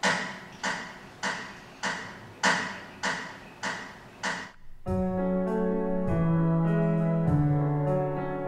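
A run of eight sharp, evenly spaced clicks, a little under two a second, then a Yamaha Disklavier grand piano begins about five seconds in, playing a slow piece in held, sustained notes.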